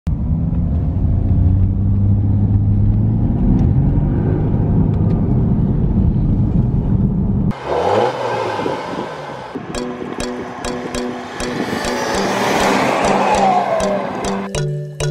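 Porsche Panamera 3.0 diesel running under way, heard inside the cabin as a dense low drone. About seven and a half seconds in, the sound cuts to a brief engine rev heard from outside. Background music with a steady beat takes over shortly after.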